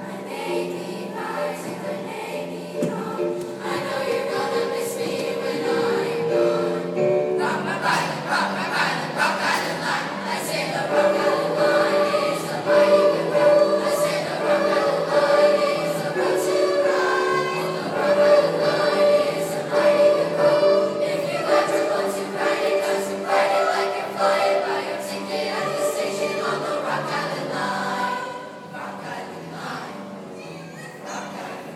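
Seventh-grade school choir singing together, growing louder about seven seconds in and dropping back near the end.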